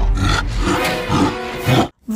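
Loud growling roars of a monster, in several rough surges, cutting off abruptly near the end.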